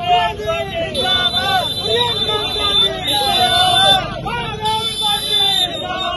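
A group of protesters shouting slogans, many voices overlapping and rising and falling together.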